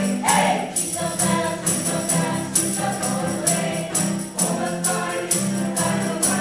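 A mixed choir singing a gospel worship song, accompanied by an electronic keyboard and a strummed acoustic guitar, with a tambourine shaken in time about twice a second.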